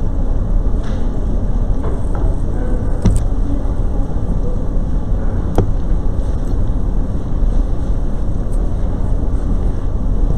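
Steady low rumble of room noise in a large auditorium, with faint indistinct activity and two sharp clicks, about three and five and a half seconds in.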